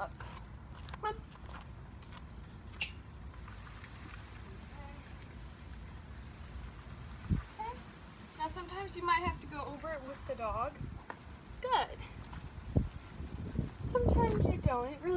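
Low steady outdoor background noise, with a distant woman's voice heard faintly a little past halfway and a couple of short soft knocks.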